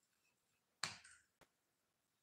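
A single sharp click, then a fainter short tick about half a second later, against near silence.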